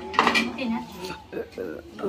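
Chopsticks knocking and clinking against ceramic bowls and a metal tray as people eat noodle soup, with a few sharp clinks about a quarter second in and again past the middle.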